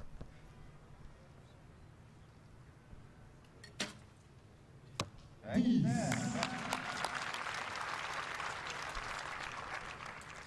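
A recurve bow shot gives a sharp snap, with a short knock about a second later. Then a crowd cheers and applauds loudly for an arrow in the ten, the clapping carrying on to the end.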